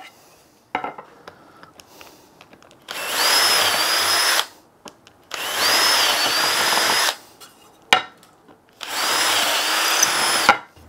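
Cordless drill boring clearance holes through a wooden rail, three separate holes of a second and a half to two seconds each. Each run starts with a whine that rises as the motor spins up. A few light knocks fall between the runs.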